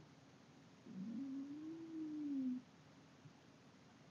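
A woman's quiet, drawn-out closed-mouth "mmm" hum of emotion, starting about a second in, rising and then slowly falling in pitch for under two seconds.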